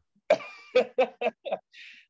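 A man laughing: a run of about six short chuckles in the first second and a half.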